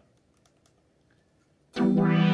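Near silence, then about 1.7 seconds in a Roland Juno synth module sounds a loud, steady sustained note with a new patch just selected.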